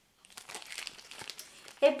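Small clear plastic zip bag of metal earring hooks crinkling as it is handled, a run of fine crackles.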